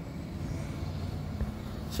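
Quiet, steady low rumble of background noise, with one faint knock about one and a half seconds in.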